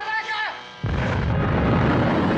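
A film-soundtrack explosion: a sudden loud blast about a second in that runs on as a dense rumble. A raised voice calls just before it.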